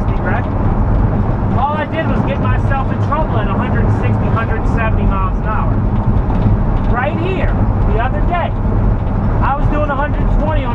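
Steady low road and engine drone inside a vehicle cabin at highway speed, with a voice talking over it throughout.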